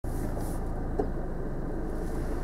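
Car engine idling steadily, heard from inside the cabin as a low, even hum.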